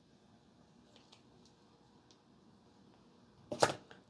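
Mostly quiet, with a few faint plastic clicks as a vintage baseball card is slid out of a cracked-open plastic grading slab. Near the end there is a short, louder rustle of handling.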